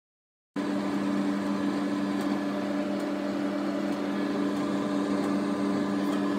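Microwave oven running with cupcakes baking inside: a steady hum made of two low tones over a soft whirring noise. It begins suddenly about half a second in.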